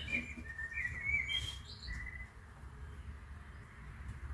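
A small bird chirping: a few short, high, gliding notes in the first two seconds, over a low steady background rumble.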